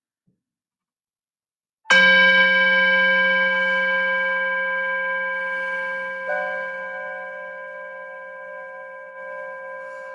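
A meditation bell struck about two seconds in, its several tones ringing on and slowly fading; a second, softer tone joins about six seconds in. It marks the start of the meditation period.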